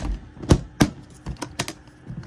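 Metal spray-gun parts and fittings knocking and clacking together as they are handled in an aluminium tool case: about six separate sharp clacks, the loudest about half a second and just under a second in.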